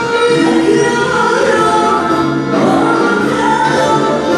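Live folk band music: women singing into microphones over piano accordion accompaniment, loud and continuous.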